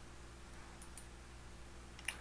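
A few faint, short clicks in the first second, over a steady low electrical hum and room tone.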